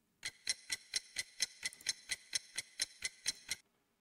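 Ticking-clock sound effect: an even run of sharp ticks, about four a second, that starts just after the start and stops abruptly near the end, while the program loads.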